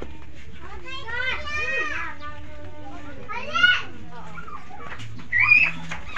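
Children's voices calling and shouting, in three short spells: a long call, a brief shout, then a rising squeal near the end.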